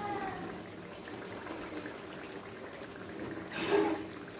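Mustard-greens saag cooking in hot oil in a karahi, sizzling and bubbling steadily. A brief, louder sound comes near the end.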